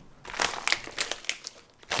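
Plastic bag of bratwurst crinkling and crackling in irregular snaps as it is picked up and handled.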